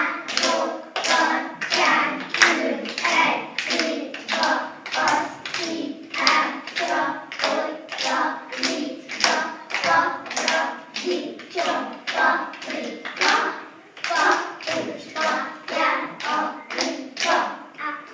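A group of young children clapping their hands together in a steady, quick rhythm while singing a rhyme in time with the claps.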